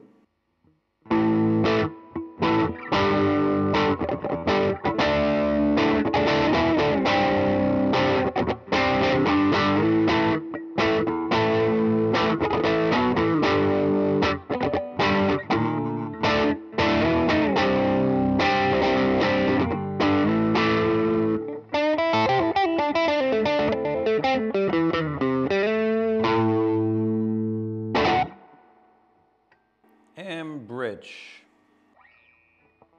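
Gibson SG Special Faded electric guitar on its neck pickup, both tone knobs fully open, played with overdrive: chordal riffing from about a second in, then a quick run of single notes, a held chord and one short final stab before it stops near the end.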